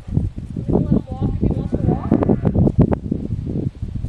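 A person talking, the words indistinct.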